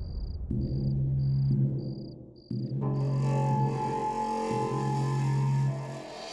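Horror background score: a low sustained drone with a short, high, even pulse repeating a little under twice a second. About three seconds in, higher held tones swell in over the drone and the pulse dies away.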